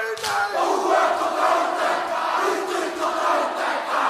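A crowd of rugby fans shouting together in a loud, sustained group chant that swells up shortly after the start.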